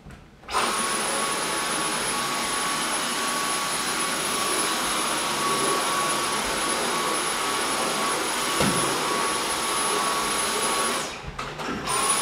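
Cordless stick vacuum cleaner switched on about half a second in and running at a steady speed with a high whine, then switched off about a second before the end.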